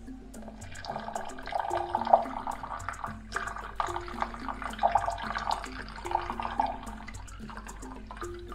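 Water poured in a steady stream from a plastic measuring jug into a mixing bowl, starting about half a second in and easing off near the end, over background music.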